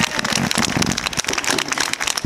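Audience applauding: many hands clapping irregularly as the music ends.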